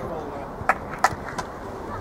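A football being kicked on an artificial pitch: two sharp knocks about a third of a second apart, then a fainter third.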